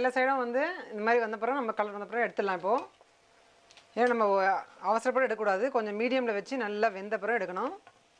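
A woman talking in two long stretches with a short pause between, over a faint sizzle of bondas deep-frying in oil.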